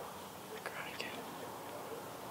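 A person whispering briefly, under a second, about halfway in, with a couple of small clicks.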